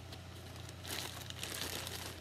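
Thin plastic bags crinkling as they are handled, the crackle growing louder about a second in.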